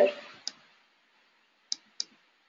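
Three short, sharp clicks, one about half a second in and two close together near the end, after the last syllable of a woman's spoken word.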